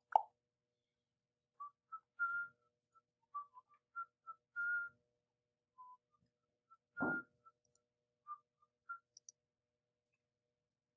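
Soft whistling in short, broken notes that shift in pitch from note to note. A louder thump comes about seven seconds in, and there are a few faint clicks.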